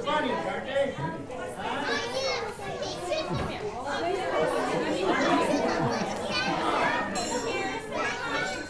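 A roomful of young children chattering and calling out over one another.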